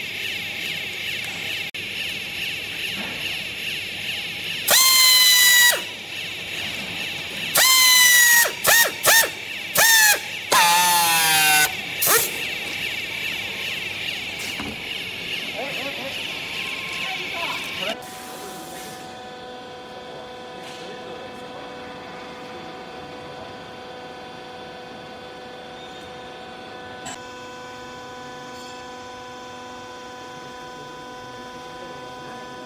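Handheld strapping tool tensioning and sealing a plastic strap around a compressed bale: a loud motor whine in several bursts of a second or so, the last ones falling in pitch as the strap draws tight. After about 18 s a steady machine hum of several fixed tones takes over.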